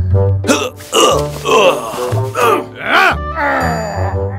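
Background music with a steady bass line, with short wordless vocal sounds rising and falling over it.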